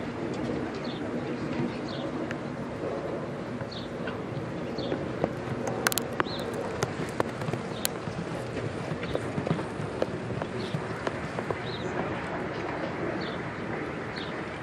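Outdoor show-ring ambience: a steady background murmur with birds chirping about once a second and scattered sharp clicks and knocks, the loudest cluster about six seconds in.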